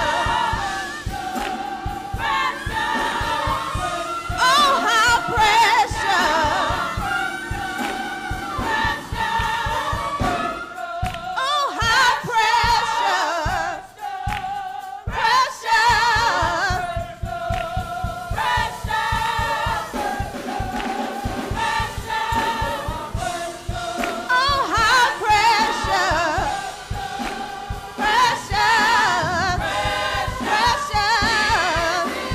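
Live gospel song: a woman soloist singing into a microphone with a choir over a steady beat. The beat drops out for a few seconds midway, then comes back.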